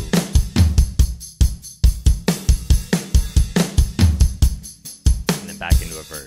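Multitrack acoustic drum kit recording played back as a loop: kick, snare, hi-hat and cymbals in a steady, rapid groove of evenly spaced hits.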